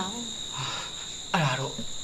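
Crickets chirring in a steady high-pitched drone, with a short burst of a man's speech over it in the second half.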